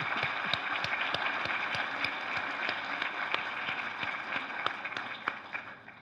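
Audience applauding: many hands clapping in an even patter that thins out and fades toward the end.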